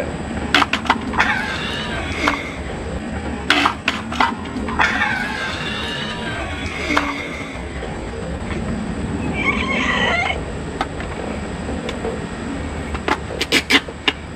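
A few sharp plastic clicks from a Watermelon Smash toy as it is pressed down, then shrieking and laughter once it has burst and splashed water, with music under it.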